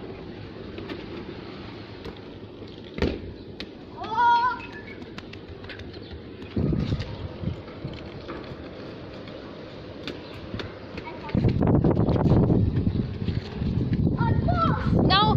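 Outdoor kickabout: a football struck once with a sharp kick about three seconds in, a short rising call soon after, and a louder stretch of rushing noise near the end.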